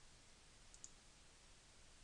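Near silence with a faint steady hiss, and one computer mouse click a little under a second in, heard as two quick faint ticks close together.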